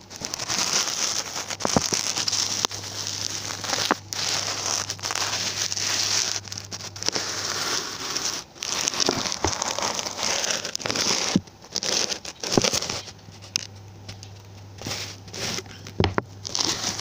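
Dense crackling, rustling noise over a steady low hum, with a few sharp clicks; it cuts out briefly several times.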